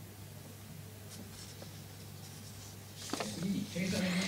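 Quiet room tone with a steady low hum, then a faint voice starting about three seconds in.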